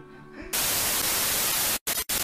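Television static: a loud, steady hiss that starts about half a second in, cuts out briefly near the end and comes back.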